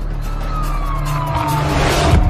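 A siren-like tone gliding slowly down in pitch over a low rumble, with a rushing noise that swells to its loudest near the end.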